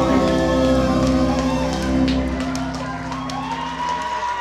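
Live rock band's closing chord on electric guitars and keyboard, held and fading out, with the drums and bass dropping away; the sustained tones stop about three and a half seconds in as the crowd begins to cheer and shout.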